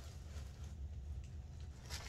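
Faint handling sounds as the top zipper of a leather satchel is pulled open, over a low steady hum.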